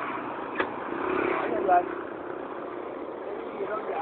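A motor vehicle's engine running past on the road, a steady hum for a second or two, under indistinct voices.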